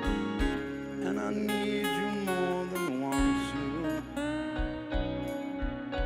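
Live rock band playing an instrumental passage: an electric guitar lead with bending, sliding notes over held chords, bass and steady drum hits.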